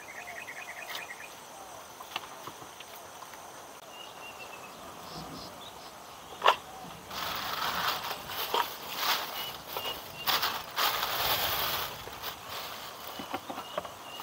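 Rustling and crinkling of leafy greens for several seconds from about seven seconds in, as fresh watercress is pressed into a metal cooking pot. Before that there is a brief high insect trill near the start and a single sharp click.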